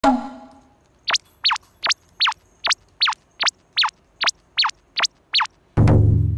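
A ringing note that fades at the start, then a run of twelve identical short chirps, each sweeping quickly up and down in pitch, evenly spaced about two and a half a second. A louder, deeper sound cuts in just before the end.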